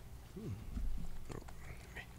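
A man's brief, low, wordless murmur that falls in pitch, followed by a soft click about a second later.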